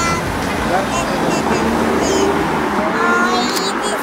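Steady city-street traffic noise with indistinct voices, a small child's high voice among them near the end.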